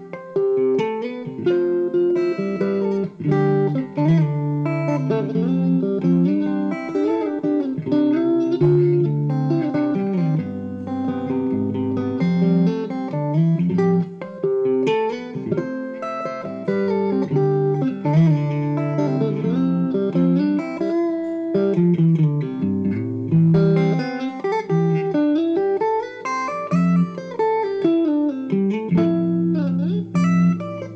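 Clean electric guitar through a Vox amp, fingerpicked in a flowing melodic riff of quick arpeggiated notes that run up and down, played dry before any chorus or delay is added.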